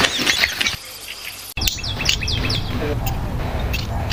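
Birds chirping in short falling chirps that come in quick runs, over a steady low rumble.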